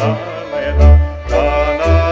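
Male voice singing a Transylvanian folk song, with vibrato, over a folk orchestra of violins and accordion, with deep bass notes pulsing on the beat.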